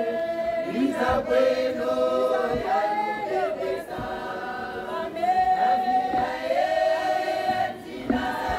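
A group of women singing unaccompanied in harmony, holding long notes that slide from one pitch to the next.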